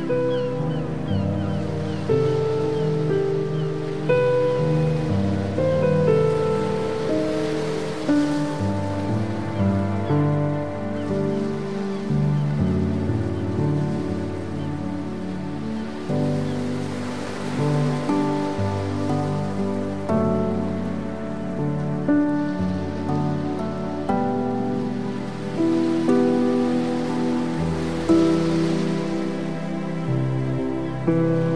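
Slow, soft instrumental worship music: sustained chords that change about every two seconds, with no singing heard.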